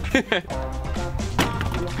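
Background music with a short laugh, and a single sharp knock of a basketball about one and a half seconds in.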